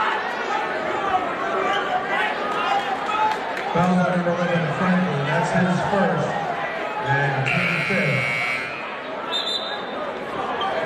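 Gym scorer's-table buzzer sounding once for about a second near the end, signalling a substitution, over steady crowd chatter and voices. A short, high referee's whistle follows just after it.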